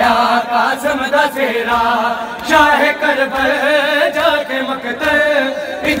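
Noha recitation: voices chanting a mournful Shia elegy in long, wavering melodic lines that run on without a break.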